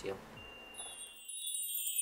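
A shimmering chime sound effect for an edit transition. It enters under a second in as a cluster of many high, bell-like tones that glide downward in pitch together and grow louder toward the end.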